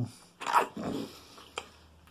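A man's voice making a short animal noise, a gruff vocal burst about half a second in that trails off within a second.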